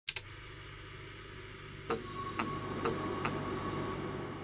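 Logo intro sound effect: a low steady drone, then four sharp ringing hits about half a second apart, starting about two seconds in, with two quick clicks at the very start.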